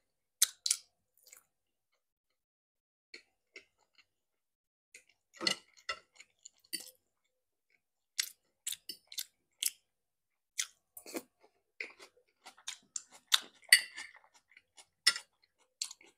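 Close-up mouth sounds of eating pork ribs: chewing and lip smacking in short separate clicks and smacks. They are sparse at first and come thicker from about five seconds in.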